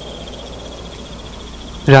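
Crickets chirping in a steady, rapid trill as background ambience, over a low steady hum.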